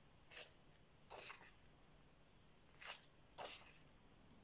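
Paper pages of a paperback colouring book being turned by hand: four short, faint swishes.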